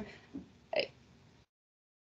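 A pause in speech on a video call: a short breathy mouth sound from the speaker about three quarters of a second in, then the audio cuts to complete silence, as when the call's noise suppression gates the microphone.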